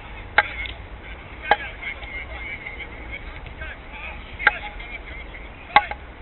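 A football being kicked in a five-a-side game: four sharp knocks spread over a few seconds. Players are calling out faintly in between.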